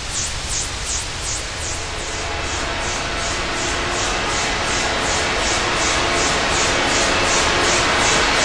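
Synthetic power-up sound effect building to an explosion: a rushing noise over a deep rumble, swept by a whooshing flange about three times a second, growing steadily louder.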